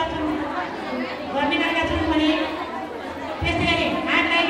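Speech only: a woman talking into a microphone, amplified over a PA loudspeaker.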